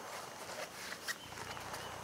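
Faint rustling with a few soft clicks as a flexible utility mat is folded into thirds by hand.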